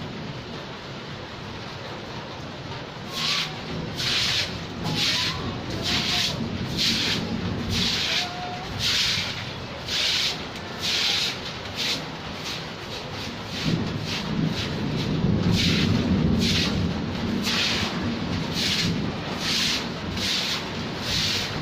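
Steady rain on a wet concrete yard, and from about three seconds in, a hand tool scraping across the wet concrete in rhythmic swishing strokes, about one a second. A low rumble builds in the background in the second half.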